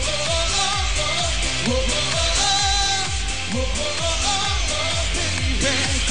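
Live electronic pop music from a band: a steady kick-drum beat about twice a second under synthesizers and a sung melody.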